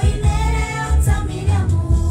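A woman and two young girls singing a gospel worship song together, over accompanying music with a deep bass line and a steady beat.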